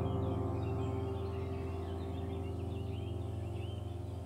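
Soft meditation background music: a sustained keyboard chord slowly fading, with small birds chirping over it throughout.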